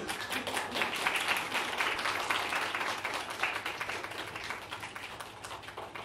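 A small audience applauding: the clapping starts suddenly, is loudest in the first couple of seconds, then thins out and fades.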